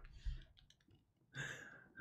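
Two people laughing quietly between words: a soft puff of breath just after the start and a few faint clicks, then a breathy laugh about one and a half seconds in.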